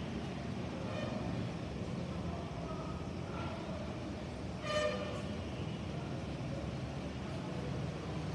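Steady low background noise of distant road traffic, with one brief faint horn toot about five seconds in.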